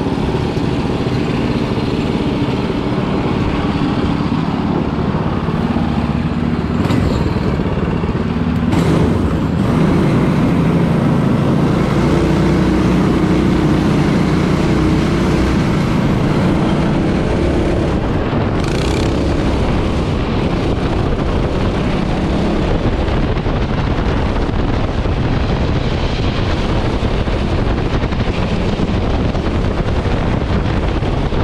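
Go-kart engines of a twin-engine ProKart running steadily, the revs rising about nine seconds in and staying up as the kart pulls away.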